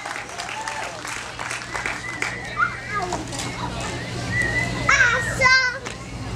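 Children's voices chattering and calling out, with a louder, high warbling child's voice about five seconds in, over a steady low hum.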